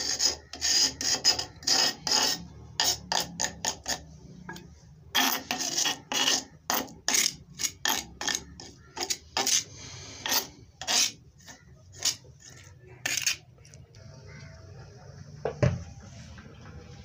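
Repeated rasping strokes of a utensil scraping and working thick ground spice paste around an earthenware bowl, roughly two strokes a second, stopping about thirteen seconds in.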